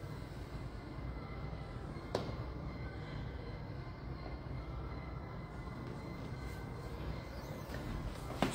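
Steady low rumble of gym room noise while a strength machine is worked through its repetitions, with one sharp click about two seconds in.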